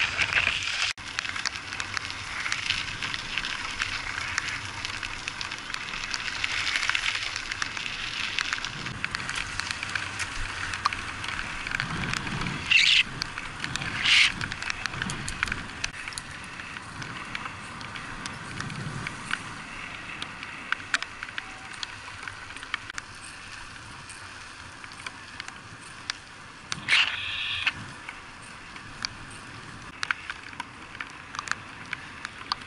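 Bicycle riding on a wet, rain-soaked paved path: a steady hiss of tyres on wet asphalt with many small clicks and rattles, and three short louder bursts, two around the middle and one near the end.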